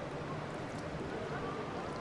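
Indoor swimming pool ambience: a steady wash of water noise with faint, distant voices echoing in the hall.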